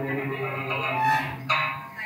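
Then singing with đàn tính accompaniment: a man's voice holds a long low note over the plucked two-string đàn tính lute. A sudden sharp sound comes about one and a half seconds in.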